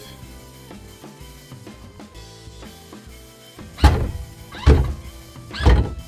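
Ford Mustang Mach-E's electric hood latch releasing when 12-volt power reaches it through the front-bumper access wires: three loud thunks in the last two seconds as the hood pops up. Background music plays throughout.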